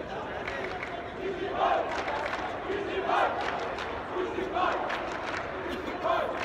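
Arena crowd shouting and cheering, with loud shouts rising out of the steady crowd noise about every second and a half.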